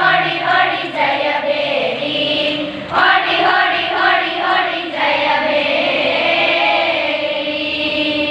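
A group of girls singing a Kannada song together, phrase by phrase, the last phrase drawn out into one long held note from about five seconds in.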